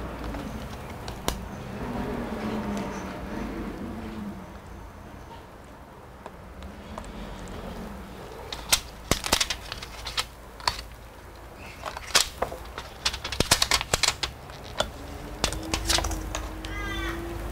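Quiet room hum, then a run of short, sharp clicks and taps starting about halfway through, coming in irregular clusters: gloved hands handling the opened laptop's internal plastic and metal parts around the RAM slot.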